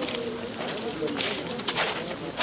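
Clothing rustle from a fleece hood and jacket being handled close to the microphone: two short, hissy bursts, about a second in and near the end.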